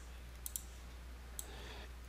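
Two computer mouse clicks, one about half a second in and another about a second later, over a faint steady low hum.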